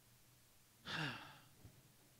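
A man's brief sigh into a handheld microphone about a second in, breathy and falling in pitch, with near silence around it.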